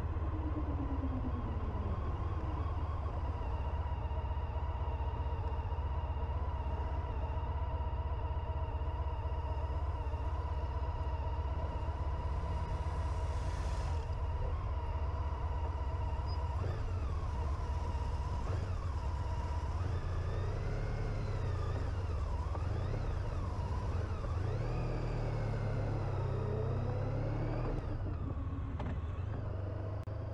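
Motorcycle riding on the road, heard from a camera mounted on it: a steady low rumble of engine, wind and road with a steady whine over it. In the second half, engine notes rise and fall several times as speed changes.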